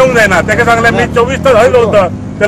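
A man speaking in Konkani.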